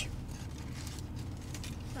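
Low, steady rumble inside a parked car's cabin.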